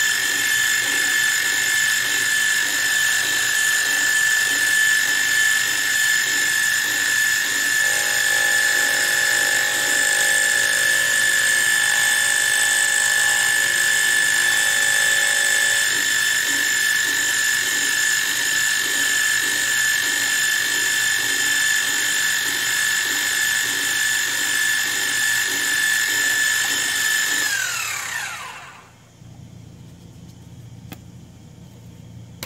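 Milling machine spindle running a face mill across a cast connecting-rod cap, trimming the big-end parting face: a steady high whine with a regular pulsing beneath it. Near the end the spindle winds down, its pitch falling, and stops.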